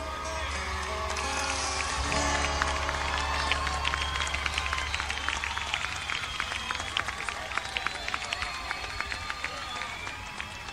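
The rock band's final chord rings out and fades over the first couple of seconds, then a crowd applauds and cheers, with many sharp claps and shouts.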